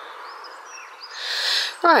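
Small birds chirping faintly over a steady outdoor hiss, with a rush of noise swelling in the second half.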